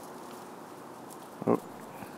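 One short, low, grunt-like vocal sound about one and a half seconds in, over a steady faint outdoor hiss.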